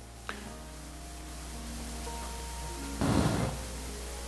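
Soft, sustained keyboard chords held steadily as background music, with a short burst of noise about three seconds in.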